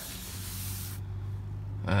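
Steady hiss of a hand rubbing across a white synthetic-leather car seat, cutting off abruptly about a second in and leaving only a low hum.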